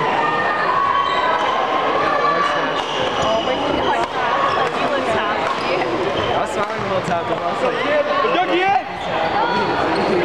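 Badminton play on a wooden gym floor: sneakers squeaking as players shift and lunge, with sharp racket hits on the shuttlecock, echoing in a large hall.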